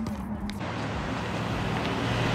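Steady road traffic noise from cars on a street, an even rush that sets in about half a second in, after a couple of sharp knocks at the start.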